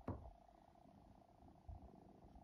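Near silence with a faint steady hum, a soft tap at the very start and a faint low thump near the end.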